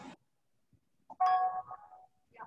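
A short electronic chime about a second in, ringing on a few steady tones for about half a second, with a fainter tone following near the end. Just before it, a microphone's background hiss cuts off abruptly.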